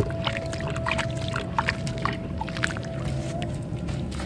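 A soaked crumbly clay chunk being squeezed and broken by hand in a basin of water: many small irregular crackles and crunches with wet sloshing. A steady thin tone runs underneath and stops near the end.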